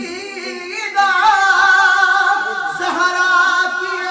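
A man singing a naat, an Urdu devotional poem, in a melismatic recital style, holding one long note from about a second in.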